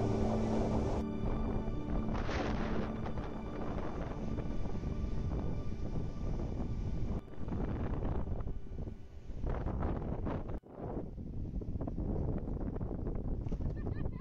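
Wind rushing on the microphone over sea surf, a rough, wavering noise that drops out abruptly twice past the middle.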